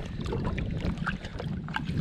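Water lapping at the side of a small boat under a steady low rumble of wind on the microphone, with faint light splashes of a hand in the water.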